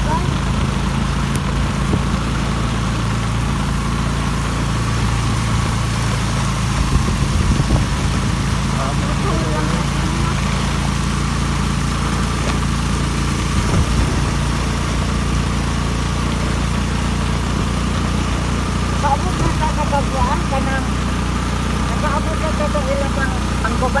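Vehicle engine running at a steady hum while driving through heavy rain, the rain and wind making a constant hiss over it. Faint voices are heard briefly a few times.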